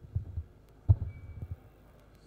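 A few low, dull thumps, the loudest just under a second in. A faint, thin high tone sounds briefly after it.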